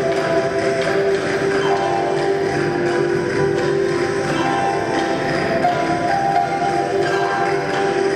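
Live acoustic ensemble music: guitars, harp and flute playing a melody of held notes over a steady strummed and plucked accompaniment.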